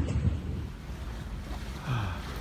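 Wind buffeting the microphone on an open rocky seashore. It eases after about half a second into a steady low rush of wind and sea.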